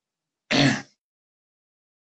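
A woman clearing her throat once, a short burst about half a second in.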